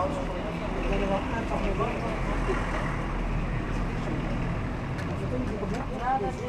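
Scattered talking from several people, including a brief "c'est bon", over a steady low background rumble.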